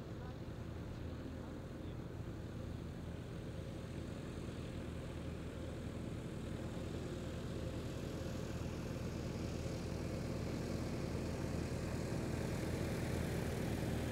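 Faint, steady outdoor background noise, a low rumble with a slight hum, slowly growing louder.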